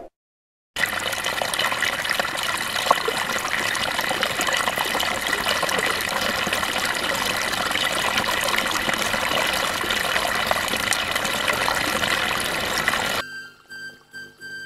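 Shallow stream running over rocks: a steady rush of water that starts suddenly just under a second in and cuts off about 13 seconds in.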